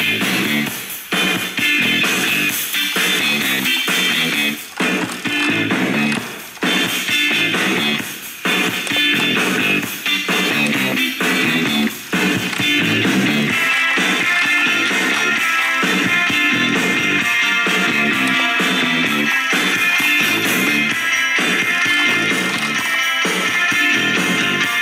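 Music from an FM station playing through the iHome iH6 clock radio's built-in speakers: a continuous song with guitar, its sound growing fuller and steadier about halfway through.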